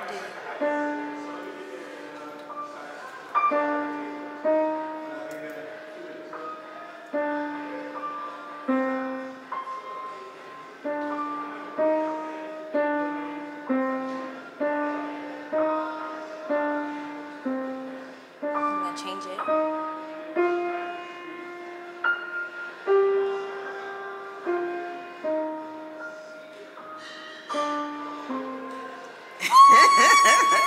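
Yamaha piano played slowly, one note at a time, about a note a second, each note ringing and fading before the next in a simple melody that rises and falls.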